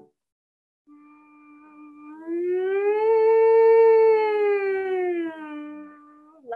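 A woman humming on 'mm' in one long, slow slide: starting about a second in on a low note, gliding up to a higher pitch and back down, then holding the low note. It is a vocal warm-up hum slide, sung slowly to stretch the sound through the notes.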